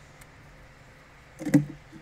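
A single sharp knock about one and a half seconds in, as the screwdriver and motor-mount parts being handled bump against the tabletop; otherwise only a quiet background.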